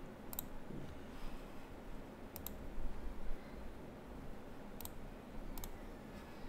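Computer mouse clicking a few times, some single and some quick double clicks, spread across a few seconds, with a couple of soft low thumps in the middle.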